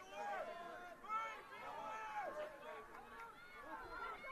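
Faint voices of soccer players calling out to each other across the pitch during play, several voices overlapping.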